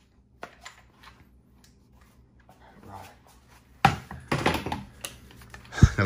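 Firearms being handled: scattered light clicks and clacks of metal and polymer gun parts. The clatter grows louder about four seconds in, and a single heavy knock comes near the end.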